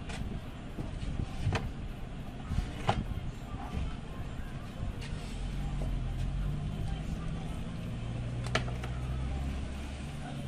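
Hard plastic knocks and clunks as a CRT television's plastic back cover is handled and set down on a table, the loudest about three seconds in and another near the end. A low steady hum or rumble comes in about halfway.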